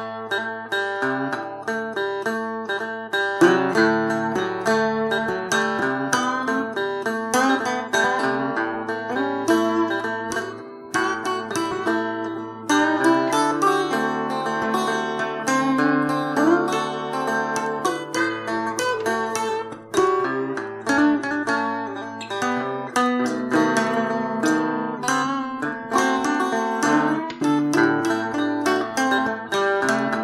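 Guitar playing an instrumental blues break: plucked single-note lines over held bass notes, with no singing.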